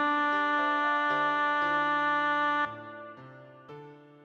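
Choral rehearsal track music: the voice parts hold one long soft chord over piano. The held chord ends about two and a half seconds in, leaving quieter piano chords.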